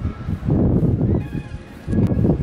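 Wind buffeting the camera's microphone: a low rumbling noise that rises and falls, easing off briefly near the end.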